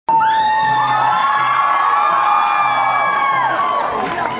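Concert audience cheering and screaming, many high voices holding and sliding in pitch and dying away near the end, over acoustic guitar playing underneath.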